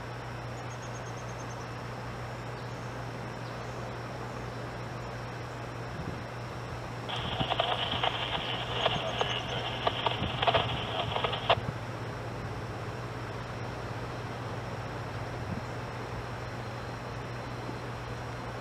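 Leslie RS3L three-chime air horn on a CSX SD60 locomotive sounding one long blast of about four and a half seconds from a distance, starting and stopping sharply, its chord of several steady tones clear over a steady low hum.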